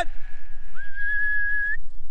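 A person whistling one clear, steady note for about a second, with a short upward slide at its start, as a stock call to bring lambs in to feed.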